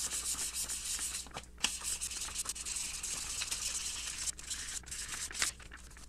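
Fine 800-grit sandpaper rubbed quickly back and forth by hand over the plastic sleeve of a hex L-key, a rapid scratchy hiss of short strokes that wears away the sleeve's embossed size text. The rubbing eases off near the end.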